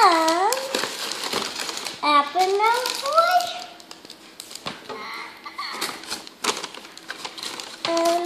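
A paper fast-food bag crinkling and rustling as a child rummages inside it and pulls food out, with many short crackles. A child's wordless voice cuts in: a short exclamation at the start and a rising sing-song from about two seconds in.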